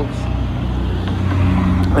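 Steady low rumble of a motor vehicle's engine, swelling slightly in the second half.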